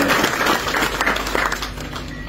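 Audience applauding, a dense patter of hand claps that dies down near the end.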